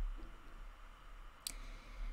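A single short, sharp click about one and a half seconds in, over a faint steady low hum.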